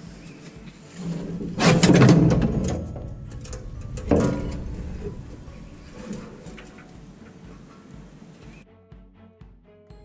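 A 50-gallon steel truck fuel tank clunking and scraping as it is pushed off its jack stands and set on the ground: a loud clunk and scrape about two seconds in, a sharper knock about four seconds in, then fainter handling noises. Background music plays, standing out clearly near the end.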